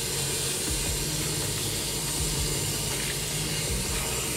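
Tap water running steadily from a mixer tap into a ceramic basin, splashing over soapy hands being rinsed under the stream.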